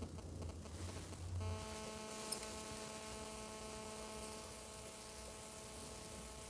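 Faint, steady electrical-sounding hum with several even overtones, starting about a second and a half in, with one brief click shortly after.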